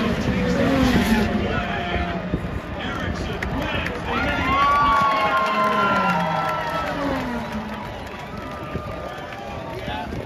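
Grandstand crowd at an IndyCar race cheering and shouting, many voices overlapping, with long drawn-out yells loudest about halfway through.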